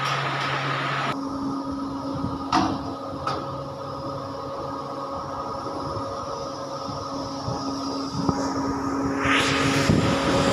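Electric motor and hydraulic power pack of a three-roller bending machine running with a steady hum. A higher hiss cuts off about a second in, a couple of clicks follow, and a rising hiss comes near the end.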